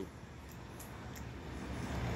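Quiet room tone with a few faint, light clicks.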